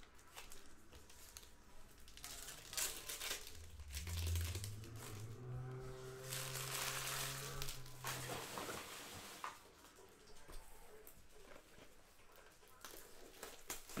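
Foil wrappers of 2020 Panini Select football card packs crinkling and tearing as the packs are ripped open and handled. A low steady hum runs for about four seconds in the middle.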